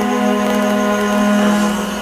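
Background music score: a soft chord held steadily, with no words over it.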